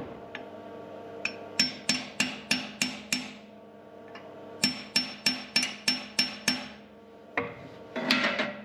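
Hammer tapping a forged steel gib key into the keyway of a flat belt pulley hub on its shaft, in two runs of quick, ringing metal-on-metal taps about three a second with a short pause between. This is the trial-fitting stage, tapping the key in until it starts to bind.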